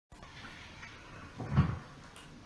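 A single dull thump, like a knock or bump against furniture, about one and a half seconds in, over a low room background.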